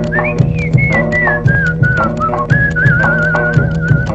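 Instrumental opening of a 1960s Tamil film song: a whistled tune over a steady rhythmic backing. The whistle climbs briefly, steps down in short phrases, and ends on a long wavering note.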